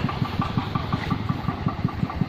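Single-cylinder diesel engine of a Vietnamese công nông farm tractor running with a rapid, even chug of about nine to ten beats a second.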